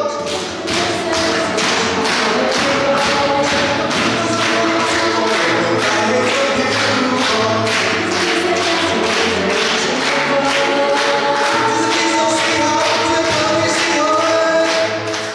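An a cappella choir singing with a string ensemble of violins, cellos and double bass, over a steady sharp beat about three times a second.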